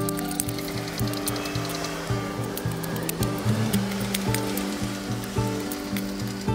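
A steel shovel digging into dry, stony soil, scraping and striking, with a longer scrape in the middle, under background music with held notes.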